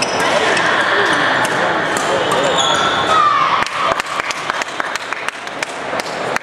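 Badminton doubles rally on a wooden court: rackets striking the shuttlecock and shoes squeaking on the floor, over voices in the background. From about three and a half seconds in, a quick irregular run of sharp taps.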